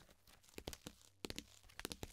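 Faint rustling and a few scattered light clicks of a book and papers being handled on a desk.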